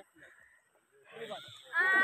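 A man's voice in the second half, a drawn-out vocal sound without clear words that grows louder toward the end. The first half is mostly quiet.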